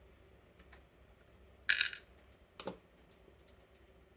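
A brief bright metallic jingle, like a small steel lock part dropping onto a hard surface, followed about a second later by a single short knock.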